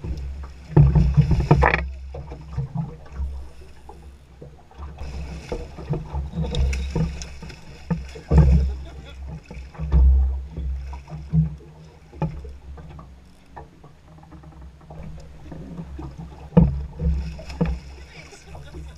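Gusty wind rumbling unevenly on the microphone aboard a small open fishing boat, with scattered sharp knocks and clicks from the boat and tackle as a fish is fought on rod and reel.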